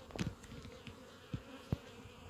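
Honeybees buzzing around the hive entrances, a faint steady hum from bees stirred up into busy flight by leftover honey put out for them to clean. A few faint clicks come through near the middle.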